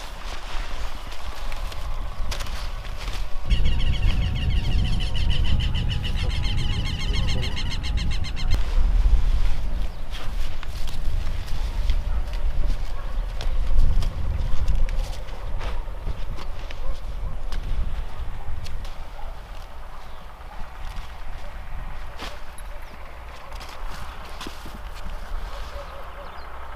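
Heads of lettuce being cut and handled by hand in a vegetable field: scattered snaps, clicks and leaf rustles over a low rumble. A bird trills for a few seconds about four seconds in.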